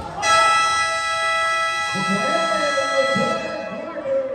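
Basketball scoreboard buzzer sounding one steady, reedy tone for about three seconds, starting suddenly and cutting off near the end, at the end of the quarter. Voices from the court and crowd run underneath.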